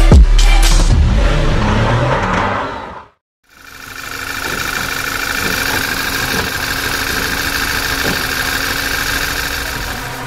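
Electronic intro music with falling sweeps ends about three seconds in. After a short gap, a VW/Audi EA888 2.0 TFSI turbocharged four-cylinder petrol engine idles steadily. It is running rough with a misfire on one cylinder, caused by a faulty ignition coil pack.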